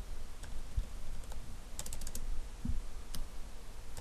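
Computer keyboard keystrokes: a few scattered key presses with a quick run of about five near the middle, as a number is retyped.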